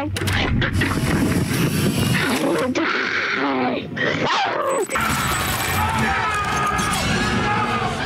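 A growling, animal-like voice shouting threats ('you're dead'), with music underneath.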